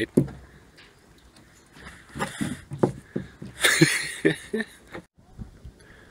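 A man laughing briefly, a breathy laugh loudest about four seconds in, amid faint knocks and handling noise.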